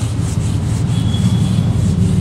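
A hand eraser being rubbed back and forth across a whiteboard to wipe off marker writing, in quick repeated strokes, over a steady low rumble.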